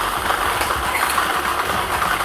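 Air-mix lottery drawing machine running steadily: its blower fan with the numbered plastic balls churning and rattling inside the clear sphere.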